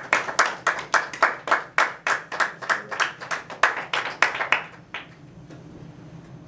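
Small audience clapping in welcome, a quick even run of hand claps at about four a second that dies away about five seconds in.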